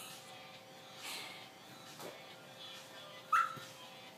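A dog gives one short, sharp yip about three seconds in, during play. Softer rustles and a click come before it.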